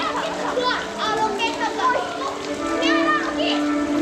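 Children's voices and excited exclamations, with music in the background.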